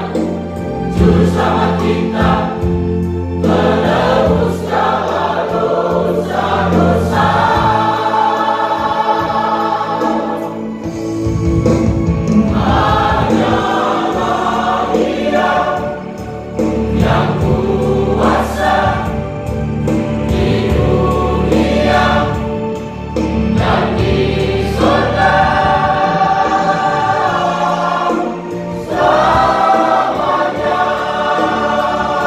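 Church choir singing a Christian song, with long held notes and short breaks between phrases.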